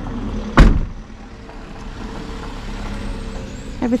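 A single sharp thump about half a second in, the loudest moment, followed by a steady low rumble with a faint hum.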